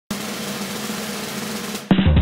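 Logo sting: a steady snare drum roll that breaks off just before the end into a loud hit with heavy bass.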